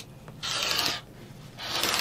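Rotary cutter blade rolling through cotton fabric along an acrylic ruler onto a cutting mat, in two short strokes about a second apart. The blade is one the quilter says needs replacing.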